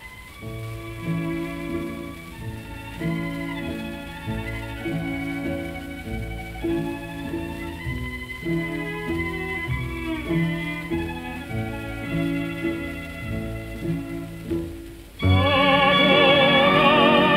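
Orchestral interlude from an old 1940s recording: the strings play short chords over a bass line that repeats in an even, lilting rhythm. About a second before the end, a tenor voice comes back in, louder, with a strong vibrato.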